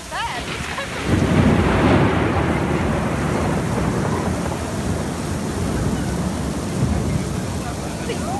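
Heavy rain pouring down, with a long low rumble of thunder that starts suddenly about a second in and slowly rolls away.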